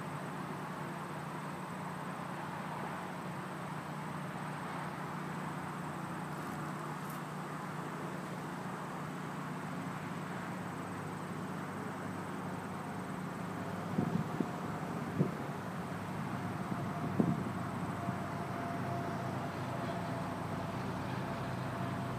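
Steady outdoor background noise: a low hum under a hiss, with a few light knocks about two-thirds of the way through.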